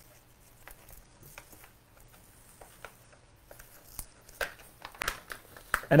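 Faint, scattered rustling and small clicks from hands handling a scaevola hanging basket, working the foliage while taking off its wire hook; the clicks come a little more often in the second half.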